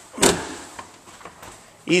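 Fibreglass engine hatch cover on a boat being opened: one loud thump and scrape about a quarter second in, then a few faint clicks.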